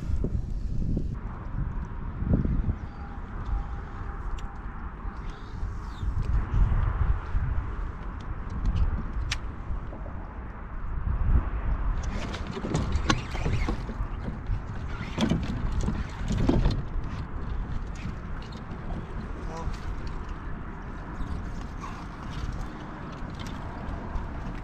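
Wind buffeting the microphone as a low, fluctuating rumble, with a few scattered clicks and knocks.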